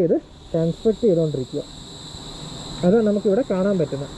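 A steady high-pitched insect drone from the roadside forest, with a man talking in two short stretches over it.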